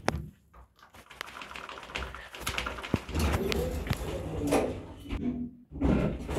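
Muffled, unintelligible recorded voice announcement from an Otis lift's speaker, starting about halfway through, with a few sharp clicks before it.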